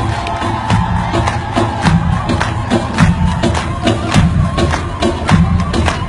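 Live Arabic pop band music with a steady drumbeat, about three hits a second, and a heavy bass, with the concert crowd cheering over it.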